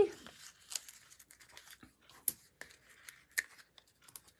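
Dimensionals, small foam adhesive dots, being peeled from their backing sheet and pressed onto a paper card panel: soft crinkling of the sheet with a scatter of small sharp ticks, the clearest about two seconds in and again near three and a half.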